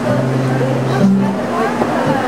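Acoustic guitar being played, with low notes held and ringing about half a second each, over people talking.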